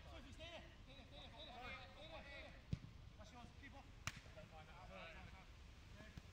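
Two sharp thuds of a football being kicked, about a second and a half apart, against faint shouts and chatter from players on the pitch.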